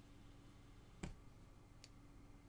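Faint clicks of a punch needle being pushed through fabric held taut in an embroidery hoop: one punch about a second in and a fainter click near the end.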